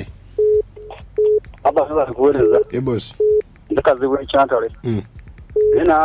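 A voice talking, with short electronic beeps at one steady pitch cutting in about six times at uneven intervals.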